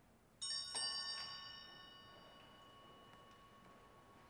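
A small church bell, struck three times in quick succession about half a second in, then ringing on with a clear, bright tone that slowly fades: the sacristy bell that signals the priest's entrance at the start of Mass.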